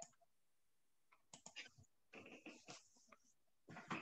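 Near silence with a few faint, scattered clicks and small noises.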